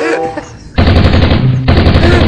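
Machine-gun fire sound effect: a rapid, even burst of shots at roughly a dozen a second, starting just under a second in.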